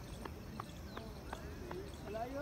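Faint sharp taps at a jogging rhythm, about three a second, over a steady outdoor background with faint distant voices.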